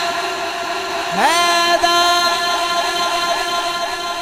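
A man's amplified voice chanting one long drawn-out note through a public-address system: it swoops up in pitch about a second in, is held with a slight waver, and slowly fades.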